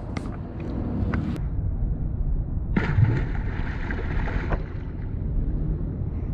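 Steady wind rumble on the microphone, with a splash about three seconds in as a released largemouth bass drops back into the pond and the water washes briefly after.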